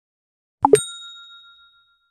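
Subscribe-button sound effect: two quick clicks, then a bell-like ding that rings out and fades away over about a second.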